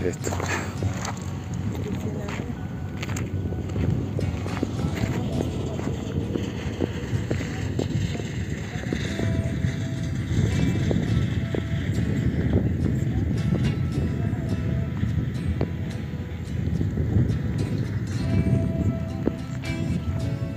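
Wind buffeting the microphone in an irregular low rumble. It grows a little stronger about halfway through.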